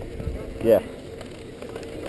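Mostly speech: one short spoken 'yeah' about half a second in, over a low, even background rumble with no distinct other sound.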